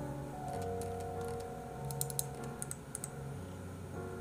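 Computer keyboard keys clicking in a few quick clusters, about two seconds in and again near three seconds, over soft background music with held notes and a low bass line.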